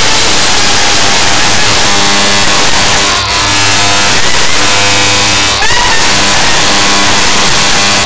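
Loud, continuous hissing blast of a fog machine filling the doorway with smoke. It cuts off suddenly, with a couple of brief squeals over it.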